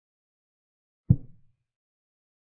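Chess board software's move sound: a single short wooden knock of a piece being set down, played as a black rook makes its move. It comes about halfway through and dies away quickly.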